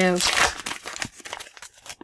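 A foil sticker packet being torn open and crinkled: a crackly rip in the first second that dies away.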